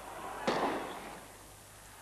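Starter's pistol fired once about half a second in, a single sharp crack with a short ringing tail: the signal starting a sprint race.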